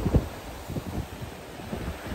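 Wind buffeting the microphone in irregular low gusts, over the wash of sea surf against rocks.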